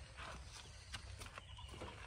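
Faint low rumble with scattered light taps and clicks.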